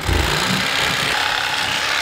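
Corded electric knife running steadily, its reciprocating blades cutting a fillet off a catfish along the backbone; it cuts out after about two seconds.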